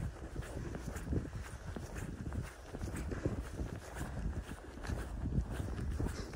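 Footsteps walking on a wet, mushy dry-lake mud crust, a string of irregular soft steps over a steady low rumble.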